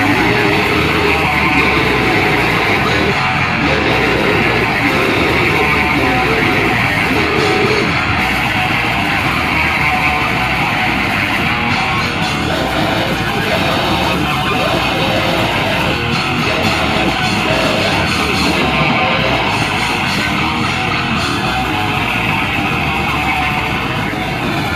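A live band playing loud rock music, with guitar and a drum kit.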